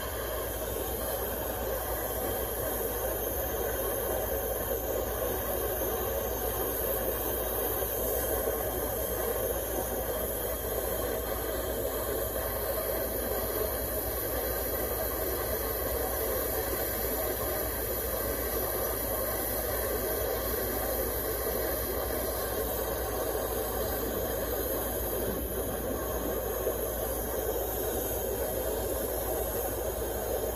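Jeweler's gas torch flame hissing steadily, heating a sterling silver piece to flow the solder under a bezel.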